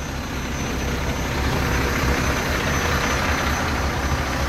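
Diesel engine of a Mack truck-mounted swab rig idling steadily, with a hiss that swells about halfway through.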